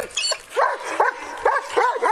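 Police K-9 dog barking in a quick series of short, high barks, about three a second, starting about half a second in.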